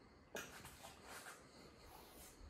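Near silence: faint room tone, with one soft click about a third of a second in.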